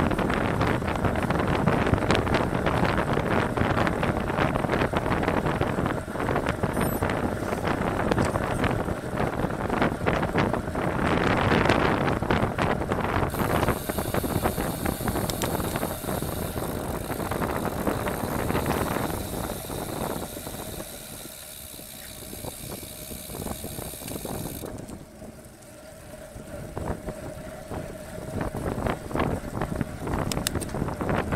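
Wind rush and tyre noise on a bicycle-mounted camera's microphone as a road bike rides at about 40 km/h. From a little under halfway the rider stops pedalling and the rear freewheel ratchet runs on as a steady buzz. The wind noise eases for a few seconds near the end, then rises again.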